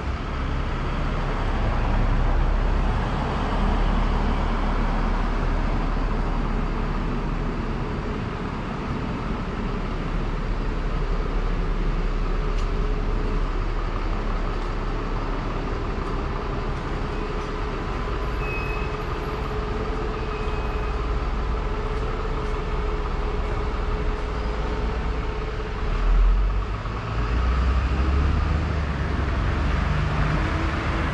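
City street traffic: a steady wash of passing car and bus engines and tyre noise, with a brief louder swell near the end.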